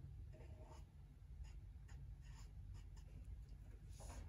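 Felt-tip marker scratching on paper in a series of short, faint strokes as shapes are coloured in.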